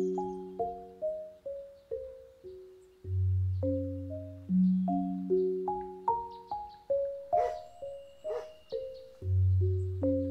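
Solo marimba playing slow rolling arpeggios of struck, ringing notes over a deep bass note that returns every few seconds. Two brief, sharper noisy accents come about seven and eight seconds in.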